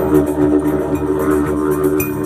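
Didgeridoo playing a steady drone in a live band, over drums and a bass guitar.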